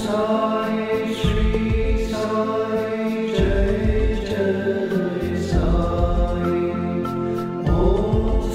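Devotional chant music: a sung mantra over sustained chords, with low bass beats.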